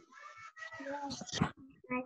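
Faint, garbled voices coming through a video call, broken up and warbling from a weak internet connection.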